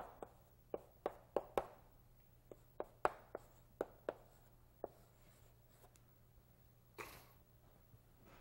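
A run of light, irregular sharp taps or clicks, two to three a second, thinning out after about five seconds, with a short rustle about seven seconds in.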